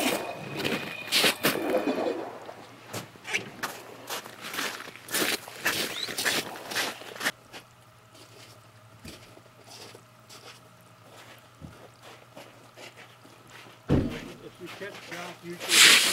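Voices of other people talking in the background, with scattered short clicks and scuffs, then a quieter stretch. A single low thump comes near the end, followed by a close voice.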